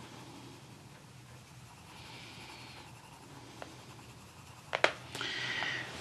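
A coloured pencil shades softly on paper, with a faint scratching stroke about two seconds in lasting nearly a second. Near the end come a couple of sharp clicks and knocks.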